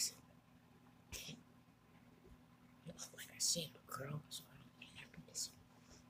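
Quiet whispered speech: short hissy bursts about a second in, then a run of breathy, sibilant whispering with a brief voiced sound in the second half.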